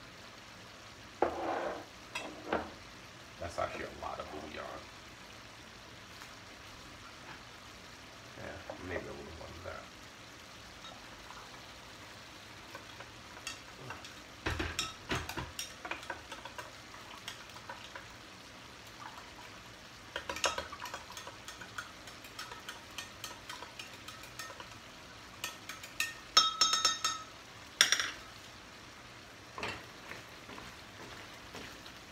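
Kitchen utensils clinking and knocking against a glass measuring cup and a stainless skillet, in scattered clusters, with a run of ringing clinks near the end. Under them is a faint steady sizzle from the pan of pasta and sausage simmering.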